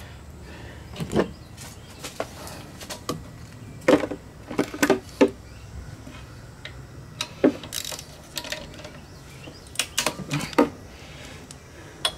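Scattered sharp metallic clinks and taps of a socket and wrench handled against the pressure washer pump's bolts and fittings, coming in small clusters about four to five seconds in, near eight seconds, and around ten seconds.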